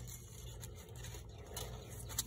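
Faint rubbing and a few light clicks over a low steady hum.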